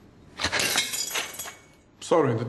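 Glass shattering about half a second in, with the pieces tinkling and clinking down for about a second before dying away.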